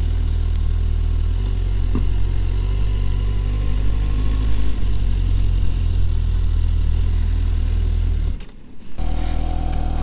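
Suzuki GSX-S750's inline-four engine running at low speed and idling, a steady low note. The sound drops away briefly near the end, then carries on.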